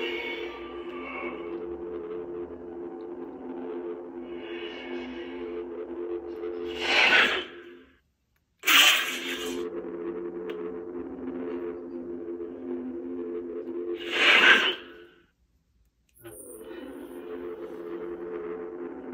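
Lightsaber sound font (the Elder Wand font for CFX and Proffie sound boards) played by a saber hilt: a steady low hum of several tones with a short swell about four seconds in. Twice, at about seven and fourteen seconds in, a loud power-down sound fades to silence, followed within a second by a sharp power-up and the hum returning.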